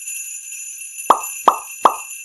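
Three quick cartoon pop sound effects about a third of a second apart, each dropping in pitch, over a steady jingle of sleigh bells.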